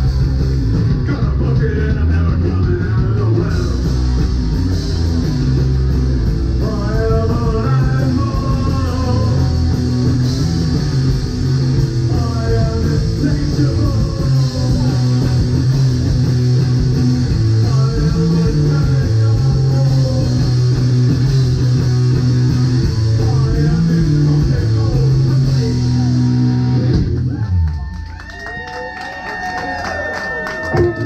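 A rock band playing live, with electric guitar, bass, drums and singing. The full band stops about 27 seconds in, leaving a few held notes ringing.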